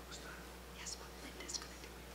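Faint whispering and low murmur from people seated in a hall, over a steady low electrical hum, with two brief soft hisses about a second and a second and a half in.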